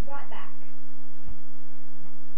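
A steady electrical hum in the recording, with a brief low thump a little over a second in.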